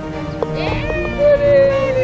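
A person's drawn-out cheer over background music as a birdie putt drops: a short click about half a second in, then a voice that rises and holds a wavering note for about a second, the loudest sound here.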